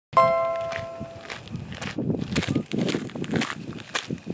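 A bright chime rings out at the very start and fades over about a second, then footsteps crunch on loose gravel at a walking pace.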